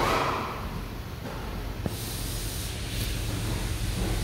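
Rustling hiss of handheld camera handling at the start, then a steady low hum with a single sharp click about two seconds in.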